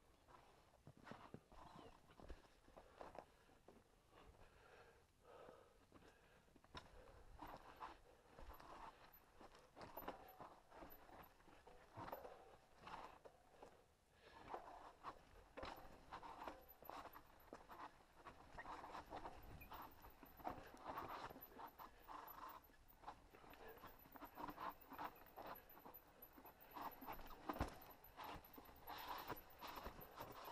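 Faint, irregular crunching and clattering of a mountain bike rolling down a rocky dirt trail, its tyres going over loose stones and gravel.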